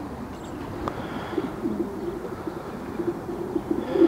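Racing pigeons cooing: a low, wavering coo that starts about a second in and runs until just before the end.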